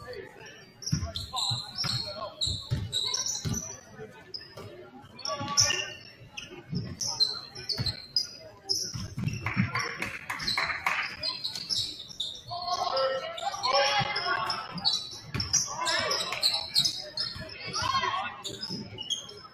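A basketball being dribbled on a hardwood gym floor, with short squeaks of sneakers and voices calling out, all echoing in a large gym.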